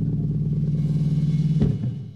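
Live rock band playing a held, droning low chord on bass and guitar with drums. A hard drum hit comes about one and a half seconds in, then the sound drops away.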